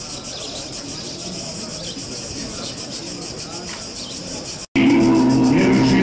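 Outdoor ambience of insects buzzing steadily with a faint murmur of people. Near the end it cuts abruptly to much louder music of long, held chords.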